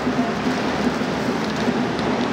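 Steady hiss of ocean surf and street traffic, with light rustling of disposable training pants being handled.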